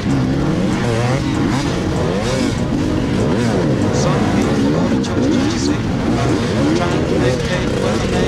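Several enduro dirt bike engines revving up and down at low speed. The closest is the two-stroke KTM 250 EXC carrying the camera, and the overlapping engine notes keep wavering up and down in pitch about every second.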